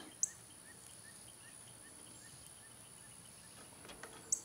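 Quiet outdoor background: a faint run of short chirps, about four a second, from a small bird or insect, over a faint steady high-pitched hum. There is a single light click just after the start.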